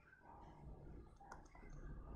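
Near silence: faint room tone with a few soft clicks while handwriting is drawn on a computer screen.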